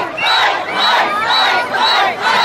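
A large protest crowd chanting in unison at about two shouts a second, with many high voices among them.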